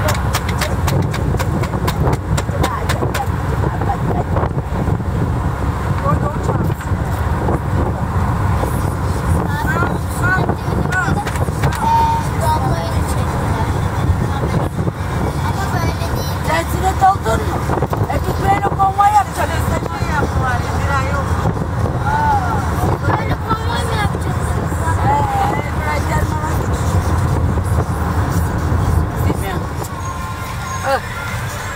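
Steady low rumble of a moving vehicle with wind buffeting the microphone. Faint, wavering voices come through over it from about ten seconds in.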